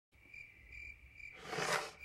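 A high, steady chirping trill, pulsing about every 0.4 seconds, followed in the last half second by a rising hiss.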